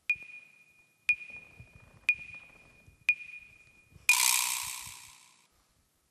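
Quiz-show answer timer counting down: four short high beeps one second apart, then a harsh buzzer sounding for over a second. The buzzer signals that the contestant's time to answer has run out without an answer.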